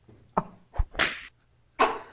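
Three short, sharp slap-like hits in quick succession around the middle, the last trailing off in a brief swish.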